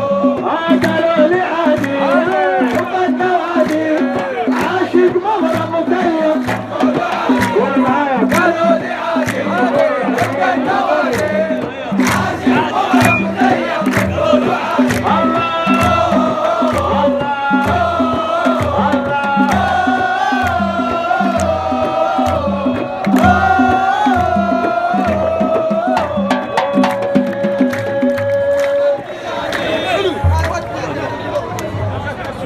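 Large crowd of football supporters chanting and singing in unison over a steady beat of big hand-held frame drums, with the chant ending on one long held note near the end.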